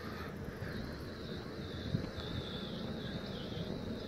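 Steady outdoor street ambience: an even noise with a low rumble and no distinct events.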